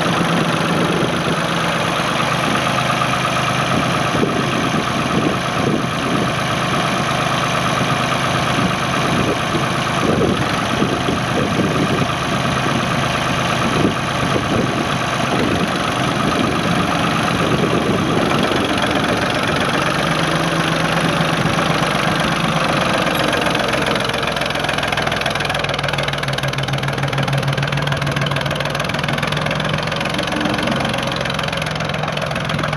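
Ford 445 loader tractor's three-cylinder diesel engine running with a steady clatter while the loader is worked and the tractor drives off.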